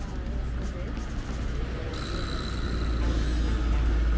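Roadside traffic: a steady low rumble, with a van passing close on the adjacent street and getting louder in the second half.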